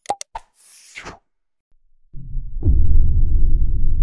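Sound effects from an on-screen subscribe-button animation: a few short clicks and a brief whoosh. About halfway in, a loud, deep rumbling music intro starts, with a quick falling sweep as it swells.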